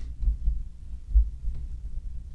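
Low, dull thumps over a steady rumble, picked up through the lectern microphone: a few irregular soft knocks, the loudest a little after a second in, typical of the wooden lectern being bumped as notes are handled.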